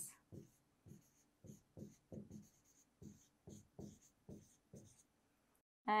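Pen writing the word "centimetres" on an interactive whiteboard: faint, short scratchy strokes, about two a second.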